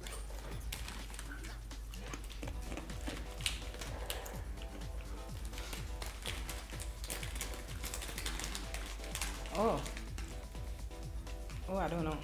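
Crisp, irregular crunching of fried banana chips being chewed close to a microphone, many small cracks in quick succession. Quiet background music underneath.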